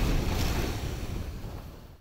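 Wind buffeting the microphone on an open snowy slope, a steady low noise that fades out toward the end.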